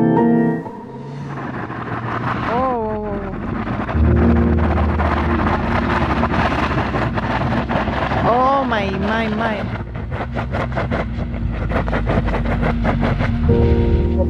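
Car engine running steadily with a rushing noise over it, the car stuck in deep snow. Voices call out briefly twice. Piano music fades out at the very start.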